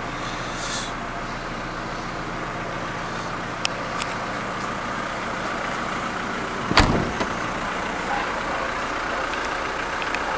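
Volkswagen Transporter T4's 1.9 four-cylinder turbodiesel idling steadily. There are a couple of light clicks about four seconds in, and a single loud thump just before seven seconds as the tailgate is shut.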